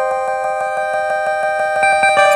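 Vintage Japanese button-keyed synth sounding through a Behringer DD400 digital delay pedal: several electronic tones held and ringing on together as a steady chord, with a new higher note coming in near the end.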